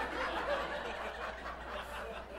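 Audience laughing quietly in scattered chuckles, dying away.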